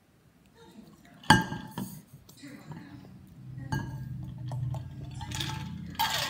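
Stainless-steel water bottle being handled, with one sharp click a little over a second in and a few smaller clicks and knocks as its flip-top lid is worked open. In the second half a person's voice holds a low, steady hum.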